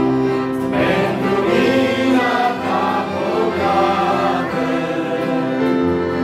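A small group of voices singing a Christian hymn together, accompanied by an acoustic guitar.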